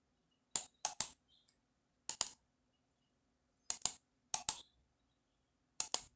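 Computer mouse clicks: one click, then five quick double-clicks spread over about five seconds.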